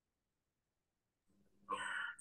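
Dead silence from a muted video-conference microphone. Near the end the line opens with a faint hum and a short, brief sound just before speech begins.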